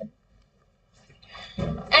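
About a second of near silence in a pause of a woman's narration, then a faint breath and her voice starting again near the end.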